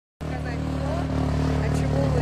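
A car engine idling steadily, cutting in abruptly at the very start, with a voice faintly over it.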